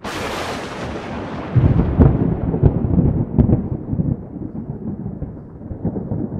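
A rumbling boom sound effect: it starts suddenly with a hiss that fades, then swells into a louder low rumble with a few sharp cracks about a second and a half in, and slowly dies away.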